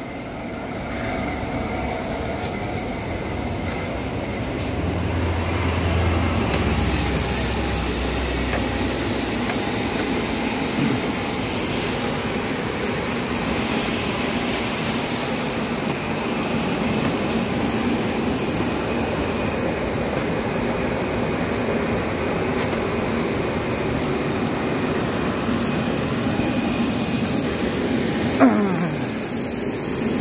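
Steady roar of jet aircraft noise on an airport apron, with a thin high whine running over it.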